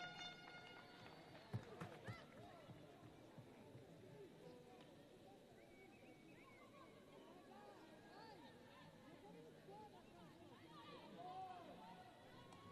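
Near silence on an open football pitch: faint, distant players' voices calling and shouting. A couple of short knocks come around one and a half to two seconds in.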